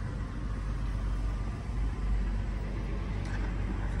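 Steady low rumble inside the cabin of a 2016 Toyota 4Runner, its 4.0-litre V6 idling.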